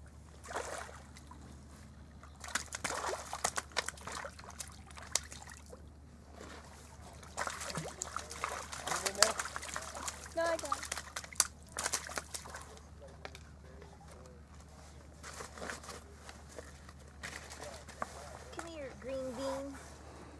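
A hooked pink salmon (humpy) thrashing in the shallows at a pebble shore as it is landed: a long run of irregular splashes that dies down in the second half.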